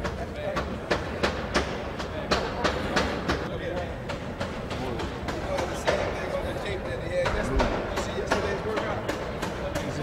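Athletic tape being pulled and pressed around a boxer's hand wrap, heard as irregular sharp clicks and crackles, about one or two a second, with low murmured voices.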